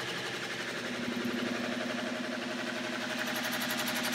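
Electric-motor prime mover running steadily, turning a 3D-printed plastic magnet-and-coil generator rotor through a wheel drive at about 660 rpm: a steady mechanical hum with a fast, even flutter.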